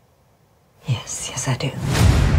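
Near silence, then a woman's voice saying "I do" about a second in. Near the end a noisy swell rises sharply as the trailer's music comes in.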